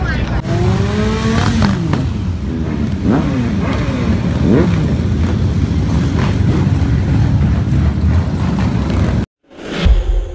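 Motorcycles riding past with their engines revving and rising and falling in pitch, over the voices of a roadside crowd. The sound cuts off suddenly near the end and a short musical sting begins.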